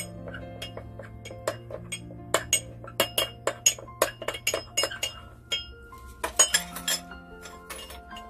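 Metal spoon clinking rapidly and irregularly against a small ceramic jug while stirring cornstarch into water to make a starch slurry, over soft background music.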